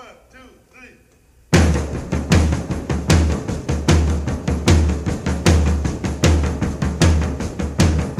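Opening of an early-1960s rock and roll record: a few faint voices calling out, then about a second and a half in the drum kit comes in loudly with a steady beat of bass drum and snare, with the band behind it.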